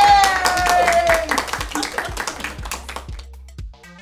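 A small group clapping and a voice holding one long, slowly falling cheer through the first second, over background music. The clapping fades out about three seconds in, leaving quieter music with a beat.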